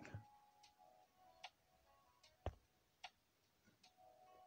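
Near silence with a few faint, irregularly spaced clicks, the sharpest about two and a half seconds in.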